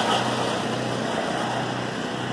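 Chantland E-12 bag moving conveyor running forwards: a steady hum with belt noise.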